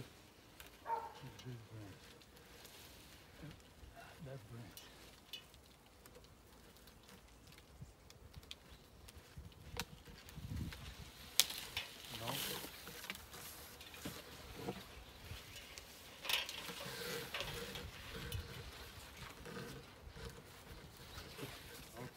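Conifer branches rustling and shaking as they are handled, in irregular stretches through the second half, with one sharp click about halfway through.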